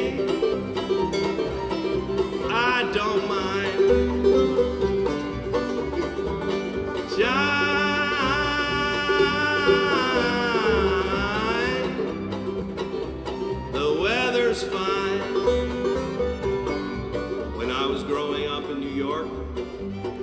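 Acoustic bluegrass band playing live: a banjo, bowed fiddles, guitars and an upright bass. A high melody line slides up and down through the middle.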